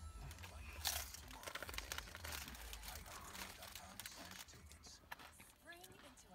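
Handling noise: camouflage-print fabric rubbing and rustling against the phone's microphone, with scattered small clicks, over a steady low hum.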